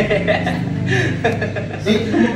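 A person chuckling and laughing under their breath.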